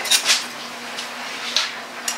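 Ceramic mugs being handled, giving a few light clinks and scrapes about a second apart, over a steady low hum.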